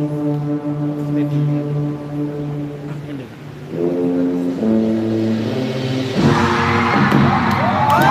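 Marching band's brass section holding long, loud chords, breaking off briefly a little before the middle and coming back in on a new chord. Near the end, cheering from the crowd swells in over the band.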